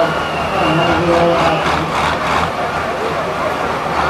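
MAN V10 engine of a pulling truck running steadily, with a voice talking over it during the first couple of seconds.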